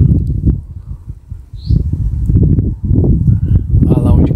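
Wind buffeting the microphone in an uneven low rumble that rises and falls in gusts, with a brief bird chirp about halfway through.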